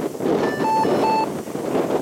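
Strong wind buffeting the microphone, with short electronic beeps from the F3F course timing system: a brief higher tone about half a second in, then two lower beeps a little under half a second apart, signalling the glider crossing the course bases.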